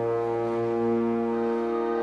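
Church organ holding a steady sustained chord over a low bass note.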